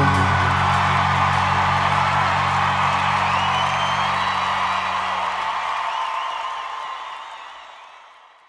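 Rock band's final chord ringing out over a cheering arena crowd. The sustained low notes die away about six seconds in, and the cheering fades out toward the end.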